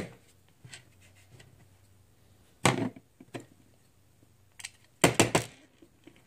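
A few sharp clicks and knocks from a die-cast model car, a screwdriver and a plastic display base being handled and set down on a tabletop: one at the start, a couple around three seconds in, and a quick cluster near the end.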